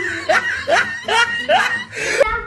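High-pitched laughter: a quick string of short whoops, each rising in pitch, about three a second.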